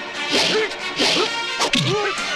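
Film fight sound effects: swishing blows and punch hits, a little over one a second, with grunts, and a sharp impact near the end, over background music.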